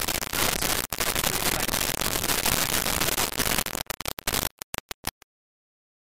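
Loud crackling static-like hiss on the recording that breaks up into short choppy bursts about four seconds in, then cuts to dead silence.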